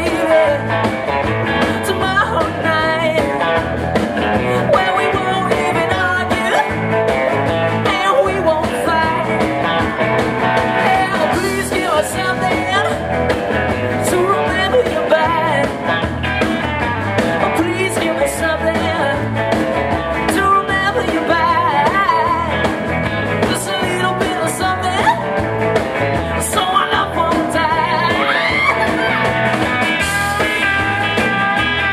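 A live rock and roll band playing: two Telecaster-style electric guitars over a drum kit with a steady beat, and a man singing.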